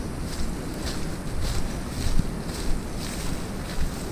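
Footsteps crunching through dry leaf litter and brushing through undergrowth, about two steps a second, over a low rumble of wind buffeting the microphone.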